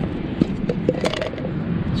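Short plastic clicks and knocks as a small plastic food container and its drainer insert are handled, over a steady low outdoor rumble.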